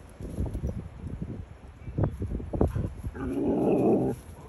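Great Pyrenees–poodle mix dog scuffling in the grass, then, about three seconds in, a low, rough dog vocalisation lasting about a second that stops abruptly.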